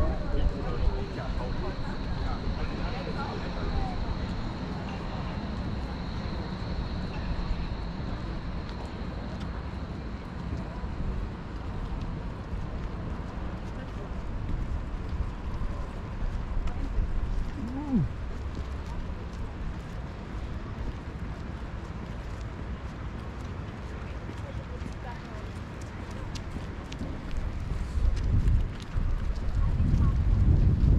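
Outdoor waterfront ambience heard while walking: steady wind noise on the microphone, with a stronger gust near the end, and the voices of passers-by in the background.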